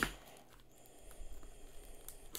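Faint handling noise from hands on a cardboard record jacket: a brief rustle right at the start, then light scattered rustles and small ticks.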